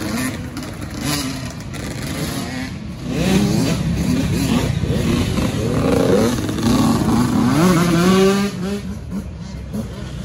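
Yamaha YZ85 85cc two-stroke dirt bike engine being ridden, revving up and dropping back several times in quick succession as the throttle is worked. It grows louder about three seconds in and falls away near the end.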